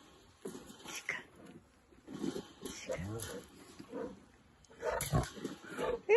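Male lion giving a series of short, low calls, the loudest about five seconds in.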